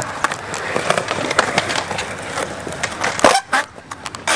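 Skateboard wheels rolling on concrete with small clicks, then one loud clack of the board about three seconds in.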